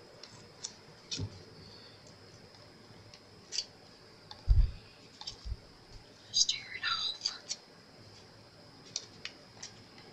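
Thin rice paper being torn by hand in small pieces: soft, scattered rustles and crackles, with a cluster of tearing sounds a little after halfway and a low bump about halfway through.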